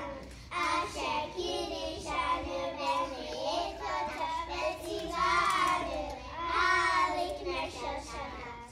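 A group of young children singing together in phrases of a second or two, with short breaths between them.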